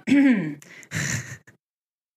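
A woman clearing her throat: a short voiced sound that falls in pitch, then a breathy rasp about a second in.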